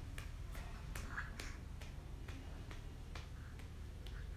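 A series of light, sharp clicks at irregular spacing, roughly two to three a second, over a faint steady low hum.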